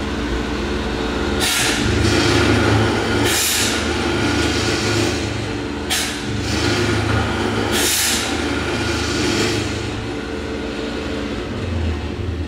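Ritter pocket hole machine's 1.5 hp single-phase motor running steadily. Four short bursts of hiss come about two seconds apart as the foot pedal cycles the cutter head.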